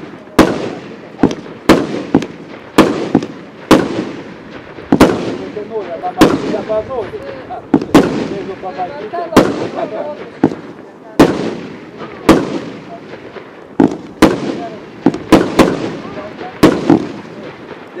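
F2-category consumer firework firing a rapid succession of aerial shots: more than twenty sharp bangs at uneven intervals of about half a second to a second, each trailing off in an echo.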